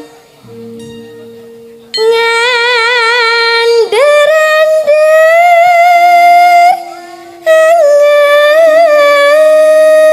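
A female Javanese sinden singing into a microphone in long held notes with a wavering ornament, over quiet accompaniment of steady held instrument notes. The voice comes in about two seconds in, breaks off briefly past the middle, and carries on to the end.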